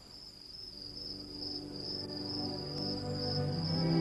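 A steady high insect chirring, like crickets or cicadas, with gentle music fading in beneath it and growing steadily louder.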